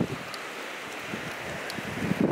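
Wind blowing across the microphone, a steady rushing noise.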